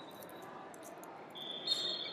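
Wrestling-hall background noise with brief high-pitched steady squeals: a short one at the start, and a longer one beginning in the second half that holds for about a second.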